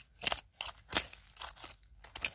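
A digging tool scraping and stabbing into gravelly soil, five short crunching strokes in quick succession, about three a second.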